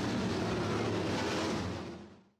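Sprint car engine running as a car passes down the front straight of a dirt oval, a steady motor noise that fades out near the end.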